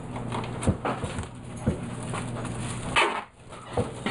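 Black duct tape being pulled off its roll with a squealing rip and wrapped around a plastic soda bottle, along with light handling knocks on the workbench. The longest, loudest rip comes about three seconds in.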